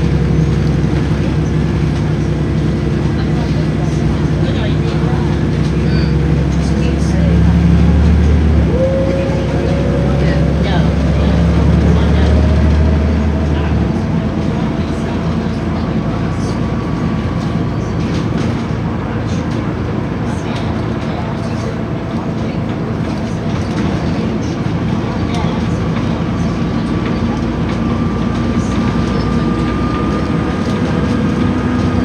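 Cabin sound of a Volvo B7RLE single-deck bus on the move: its six-cylinder diesel engine pulls strongly for about the first half, then its low note drops away, leaving running and road noise with a faint whine that slowly rises in pitch.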